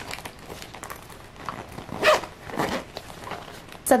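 Metal zipper on a small marble-print makeup pouch being pulled shut in a few short scraping runs, with some handling of the bags.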